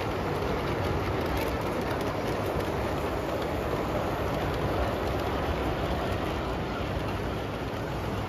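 LGB G-scale model trains running on the layout's track: a steady rolling rumble and rattle of wheels on rails, with a few faint clicks.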